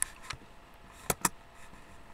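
A few short, sharp clicks: a faint one at the start and another shortly after, then two loud clicks in quick succession about a second in.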